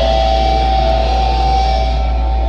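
Live thrash metal band holding a sustained closing chord: guitars ring out on one steady pitch over a heavy low rumble.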